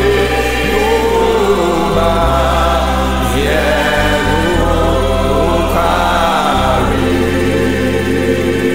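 Gospel worship music: a choir sings over held bass notes that change every second or two.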